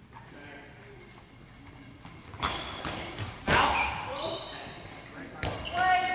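Goalball, a hard rubber ball with bells inside, thrown along a wooden gym floor: three loud knocks of the ball striking the court and defenders, about two and a half, three and a half and five and a half seconds in.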